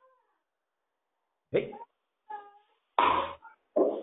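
A pause in conversation: near silence for about a second and a half, then a voice saying "okay" followed by a few short voiced sounds.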